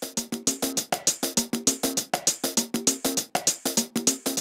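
Programmed conga loop playing a fast sixteenth-note pattern of short, pitched hand-drum hits, with every second sixteenth note shifted later to give a swing or shuffle feel.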